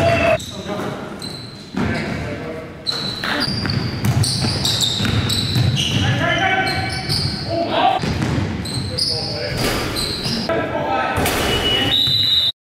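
Game sound of indoor basketball: the ball bouncing on the court and players' voices and shouts, with the echo of a large gymnasium.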